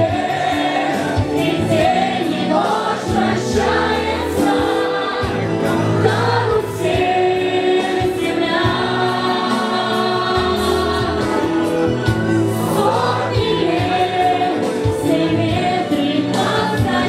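A group of people singing a song together, led by a woman's voice through a microphone, over a steady musical accompaniment.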